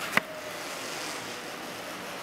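F5 power wheelchair turning on the spot, its drive motors giving a faint steady whine over the steady rushing of a room heater, with one sharp click just after the start.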